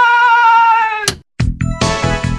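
A long, high, wavering cry, cut off abruptly about a second in with a click, then synth theme music with a steady beat starts.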